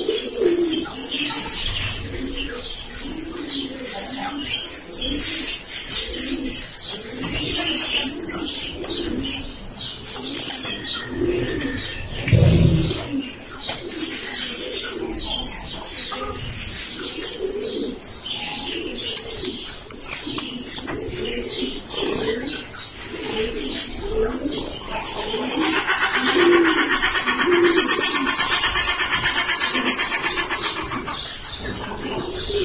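Raccoon mother and kits calling to each other: a continuous run of short, low calls with higher chirps over them, joined by a buzzy trill in the last few seconds. There is a single thump about halfway through.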